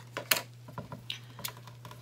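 A few light clicks and taps of small scissors and cut flower stalks being handled on a plastic tray, the sharpest click about a third of a second in and fainter ones around one and a half seconds.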